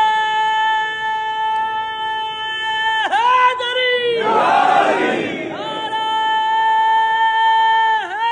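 A man singing a devotional kalam, holding a long high note at a steady pitch that dips and breaks off about three seconds in. Many voices of a crowd rise briefly before he holds a second long note to near the end.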